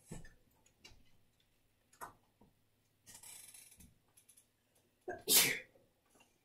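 A person sneezing once, loudly, about five seconds in, with a short intake just before. Before it come faint taps of a brush working paint on a palette and a brief hiss.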